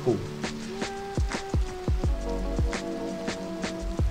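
Background music: a deep kick drum hitting about three times a second under held synth notes.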